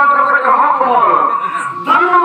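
A performer's loud voice in theatrical declamation, drawn out on long wavering tones with a falling glide partway through, and a short knock near the end.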